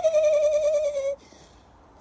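A woman's voice holding one long, high 'oooh', gliding slightly down in pitch and stopping abruptly about a second in.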